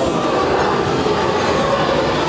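Loud, steady mechanical rumble and rattle from a haunted maze's effects soundtrack, with no clear pauses.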